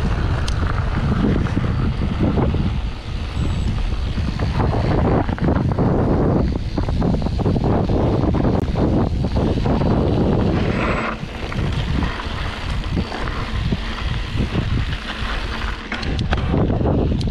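Wind buffeting the microphone of a mountain bike's handlebar camera, with the tyres running on a gravel dirt road. The noise is loud, strongest at the low end, easing a little about two-thirds of the way through.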